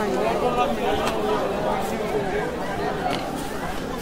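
A crowd of many people talking at once, a dense babble of overlapping voices with no single speaker standing out.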